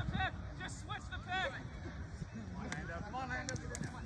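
Several short shouted calls from distant voices of players and spectators, over a low steady rumble.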